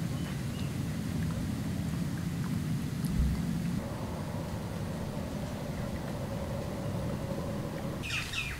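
A steady low mechanical hum, like a running engine, joined about four seconds in by a faint steady higher tone.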